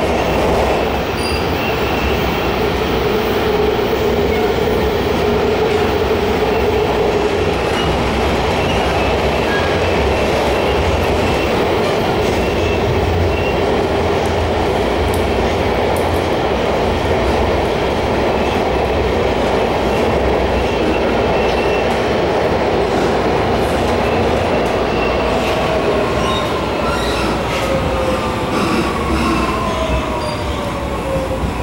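A MARTA rail car running on the line, heard from inside the car: a steady, loud rumble of wheels on track. Near the end a whine falls in pitch.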